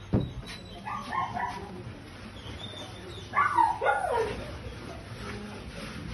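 A dog whining and yelping in two short bouts: a few brief notes about a second in, then a louder call falling in pitch about three and a half seconds in. A single knock comes right at the start.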